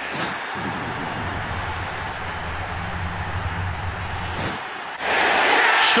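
Football stadium crowd noise with a steady low rumble. About five seconds in, the crowd breaks into a sudden loud cheer as the goal-line run scores a touchdown.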